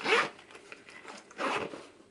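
Zipper of a polyester bicycle saddle bag being pulled in two short zips, the first at the very start and louder, the second about a second and a half in.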